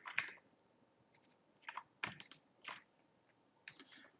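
A few faint, scattered clicks of a computer keyboard and mouse.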